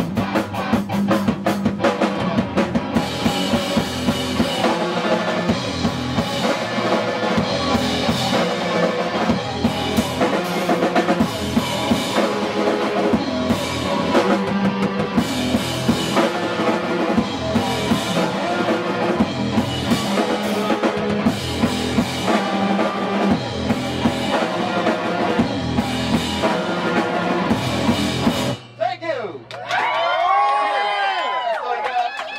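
Live rock band playing: electric guitar, bass and drum kit with a steady beat. The song cuts off abruptly near the end.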